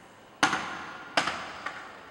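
Hula drum strikes: two loud, sharp beats about three-quarters of a second apart, each ringing briefly, then a softer tap near the end.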